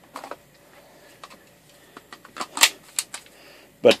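Hard plastic clicks and clacks of a cordless drill's battery pack being handled and snapped into the tool, a handful of sharp separate clicks with the loudest about two and a half seconds in.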